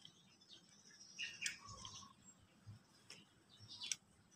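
Very quiet: a few light clicks from the opened circuit breaker's switch mechanism as it is worked by hand, with faint bird chirps in the background.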